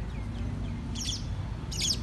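Small birds chirping: a few faint chirps, then two short bursts of quick high chirps, about a second in and near the end.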